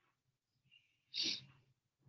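A single short, sharp burst of a person's breath about a second in, lasting about a third of a second.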